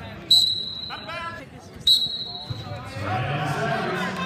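Referee's whistle blown in two sharp blasts about a second and a half apart, each a steady shrill tone just under a second long.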